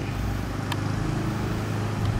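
A motor vehicle engine idling: a steady low hum, with one faint tick under a second in.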